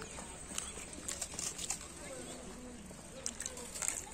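Faint, distant voices of people talking over a quiet outdoor background, with a few light clicks scattered through.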